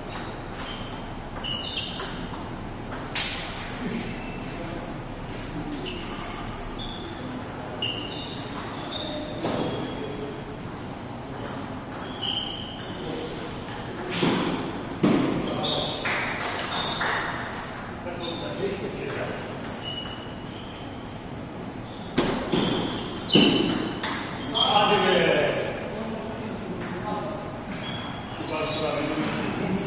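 Table tennis balls clicking off bats and tables in an echoing hall, scattered through the whole stretch from the rally at this table and others nearby. Voices talking across the hall, loudest mid-way and near the end.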